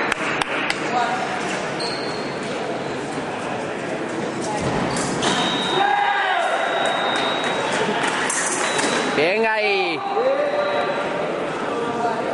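Fencing bout in an echoing sports hall. Background voices run throughout, with a few sharp metallic clicks of blades near the start and squeaks of fencing shoes on the piste about six and ten seconds in. A thin high tone is held for a few seconds in the middle.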